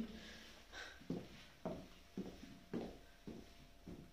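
Footsteps of boots on a tiled floor, about two steps a second, walking away.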